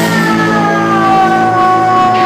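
Amplified electric guitar holding a sustained, ringing note whose pitch slides slowly downward for the whole two seconds, over steady lower notes from the band.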